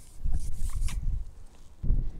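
Rustling and low bumping handling noise as a landing net pole is handled and drawn in, with a louder bump just before the end.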